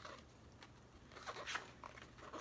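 A few faint rustles of a paper booklet being handled in the hands, mostly in the second half.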